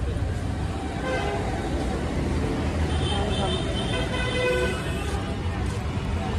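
Street traffic with a steady low engine rumble; a vehicle horn sounds for about a second near the middle.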